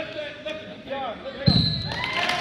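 Referee slaps the wrestling mat with a loud thud about one and a half seconds in, calling the fall (pin), together with a short steady whistle blast.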